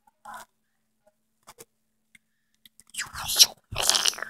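Hand-handling noise on a vintage movie camera: a faint scrape near the start and a few tiny clicks, then two louder short rubbing scuffs about three seconds in.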